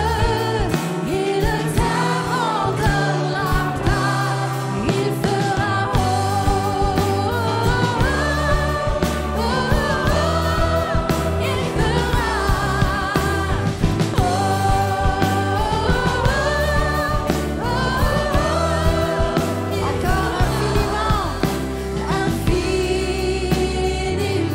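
A live worship band playing a French worship song: women's voices singing the melody together, with drums, electric bass, guitar and keyboard accompanying. Midway the voices sing an "oh oh oh" refrain.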